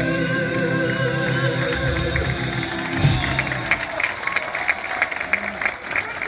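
A live band and a female soul singer finish a ballad on a long held note with vibrato, ending on a final chord about halfway through. The audience then breaks into applause.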